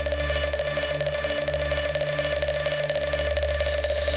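Electronic dance music mixed live on a DJ controller: a held synth tone over steady bass with fast ticking percussion. Near the end a hissing sweep builds up and cuts off.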